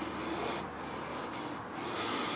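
Footsteps rustling on grass and pine straw as a person walks, a steady scuffing noise, with a light click at the start.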